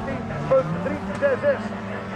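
Autocross race-car engines running on the dirt track, with one engine's pitch climbing about half a second in, under a track announcer's voice on the loudspeaker.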